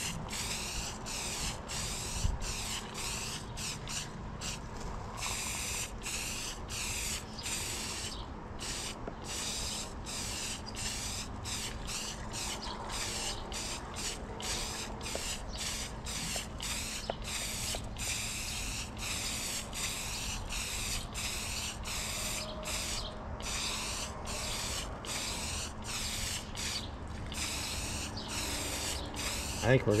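Aerosol spray paint can hissing in many short, repeated bursts as matte black paint is sprayed onto a metal tool box lid. The can is running low on paint, down to mostly propellant.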